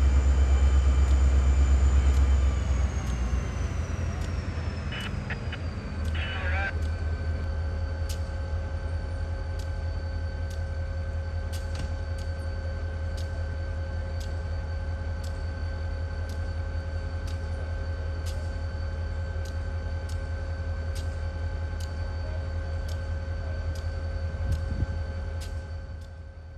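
Diesel locomotives of a stopped work train running. The heavy low engine sound eases off after about two seconds, and a whine falls in pitch as the engines settle to idle. Then a steady idle hum with constant tones continues, with two short hisses around five and six seconds in.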